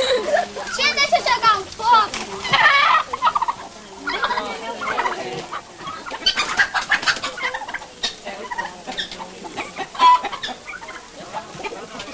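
Domestic fowl clucking and calling in repeated wavering calls, loudest in the first few seconds.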